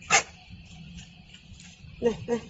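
A single short, sharp animal bark about a split second in, dropping quickly from high to low pitch.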